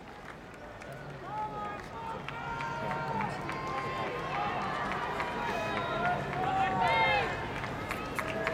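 Large stadium tennis crowd between points: many voices chattering and calling out over one another, with a few shouts standing out, the loudest about seven seconds in.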